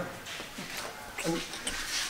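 A few short, quiet voice-like sounds, much softer than the conversation on either side.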